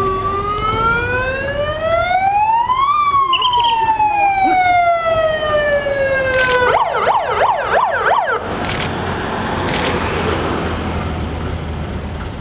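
Vehicle siren wailing: one slow rise and fall in pitch, then a rapid yelping warble for about two seconds before it cuts off. Loud street noise follows.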